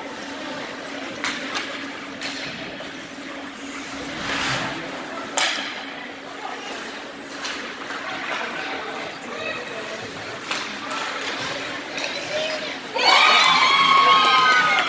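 Ice hockey game sounds in an indoor rink: a steady low hum under scattered knocks and clacks of sticks and puck, with crowd voices in the background. About thirteen seconds in, spectators break into loud shouting.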